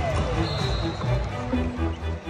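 Arena music over the PA with a pulsing bass line, mixed with the voices of the crowd.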